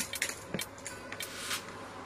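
Handling noise: a few scattered clicks and light rustles as a handbag is moved about.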